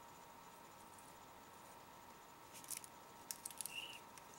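Near silence, then a few short, faint crackles in the last second and a half as a small foil blind-bag packet is handled.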